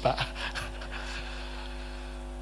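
A short breathy pant or exhale into a handheld microphone just after the last word, then a steady, even hum from the sound system.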